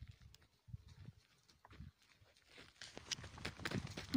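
Faint hoof steps and scuffing of a young water buffalo walking on dry, crusted ground, growing quicker and louder in the last second.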